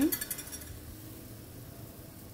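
Washing soda solution at a low boil in a large stainless steel pot on a gas burner, a faint steady hiss of bubbling.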